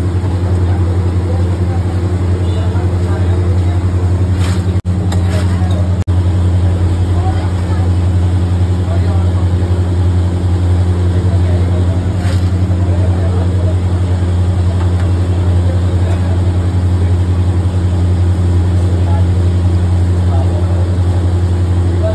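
A steady, loud low mechanical hum, like a blower or fan motor in a commercial kitchen, over the fainter hiss of bhajiya frying in a kadai of hot oil. The sound drops out briefly twice, about five and six seconds in.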